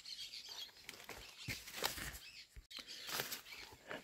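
Faint birds chirping, with a few brief soft rustles of corn leaves.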